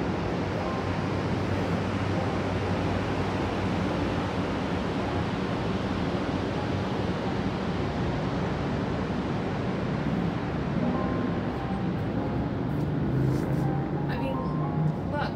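Steady outdoor wind rushing over the microphone, with a faint low hum of city noise beneath it.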